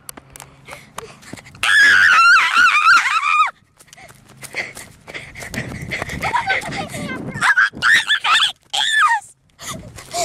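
Children screaming in high, wavering shrieks without words. One long loud scream comes about one and a half seconds in; more shorter shrieks follow in the second half, over rough rumbling from a jostled handheld camera.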